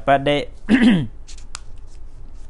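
A monk's voice chanting Pali in an even recitation tone, closing a phrase with a falling note about a second in, then a pause with a few faint clicks.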